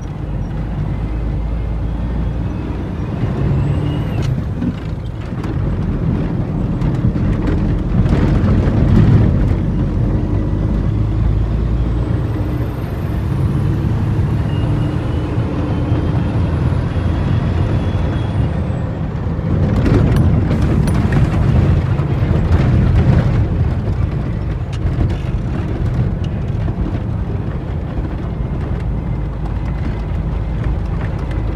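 International 9400 truck's diesel engine running under load, heard from inside the cab while driving a rough dirt track, with the cab and body knocking and rattling over the bumps. It swells louder about a quarter of the way in and again about two-thirds in.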